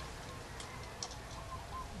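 Faint clicks and light taps of a metal light fixture's base being handled and pressed against a wall, over a low steady background.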